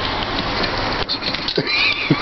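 Steady car-cabin noise, then near the end a person's high, squealing stifled laugh in short rhythmic bursts.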